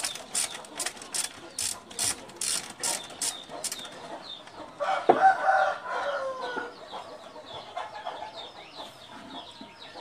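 A ratchet wrench clicking in an even rhythm, about two to three clicks a second, as it is worked on the engine; the clicking stops after about four seconds. About five seconds in a rooster crows, the loudest sound here, followed by faint clucking.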